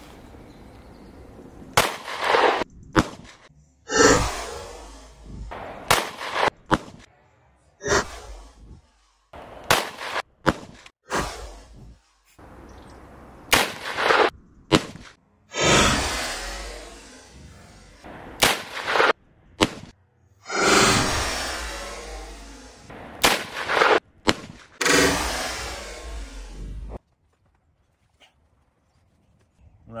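A string of about a dozen pistol and revolver shots, from a Canik TP9 9x21 pistol and then a Taurus Tracker .357 Magnum revolver, fired into aerated-concrete and hollow-plaster partition walls. The shots come a second or two apart, several with a long drawn-out fading tail, and the sound stops short about three seconds before the end.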